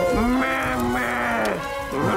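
A long, held voice-like moan that slides up at the start, holds one pitch and falls away at the end, followed at the very end by a second such moan, with music under it.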